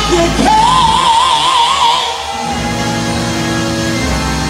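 A woman singing into a microphone, holding one long note with wide vibrato over sustained chords and bass; the voice drops out about two and a half seconds in and the backing carries on alone.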